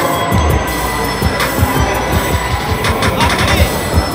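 Music playing over a loud, continuous background din, with many irregular knocks and clatters running through it.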